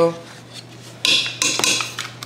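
A metal potato masher clattering and clinking against a pot of boiled potatoes for most of a second, starting about halfway through after a quiet moment.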